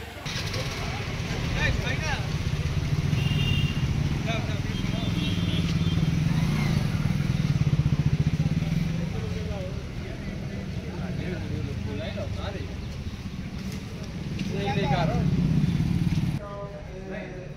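Road traffic: a vehicle engine running and passing, swelling about halfway through and again near the end, with people talking over it.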